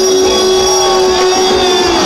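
Live band music played loud through a concert PA and recorded from among the crowd: a sustained note over a steady drum beat.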